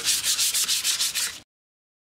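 Fine-grit sandpaper rubbed by hand over a painted wooden board in quick back-and-forth strokes, about seven a second: light sanding of the dried finish to smooth it. The sanding stops abruptly about one and a half seconds in.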